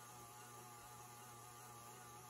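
Faint, steady motor hum of a KitchenAid stand mixer whipping coffee cream in a steel bowl.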